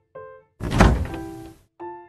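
A single loud thunk with a short rushing tail as a miniature toy refrigerator door is pulled open, over soft piano music.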